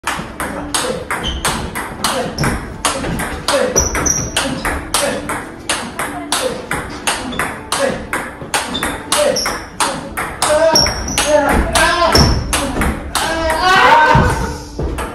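Table tennis ball in a fast forehand drive rally: sharp clicks of the ball striking rubber-faced bats and bouncing on the table, about three a second in a steady back-and-forth rhythm.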